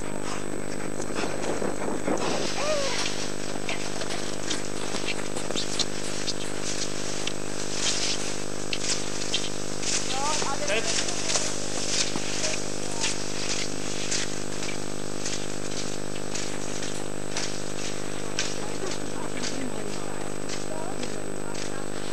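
A steady hum made of several even tones runs under the whole recording, with scattered short clicks through the middle and faint distant voices now and then.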